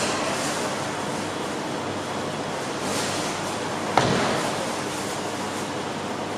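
Steady background hiss of a fast-food restaurant counter area, with one sharp knock about four seconds in that dies away quickly.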